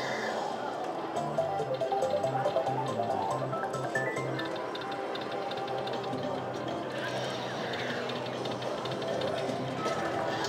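Mustang Fever slot machine playing its free-games bonus music and win jingles as the win meter counts up, with a louder stretch between one and three seconds in and a rising tone about four seconds in.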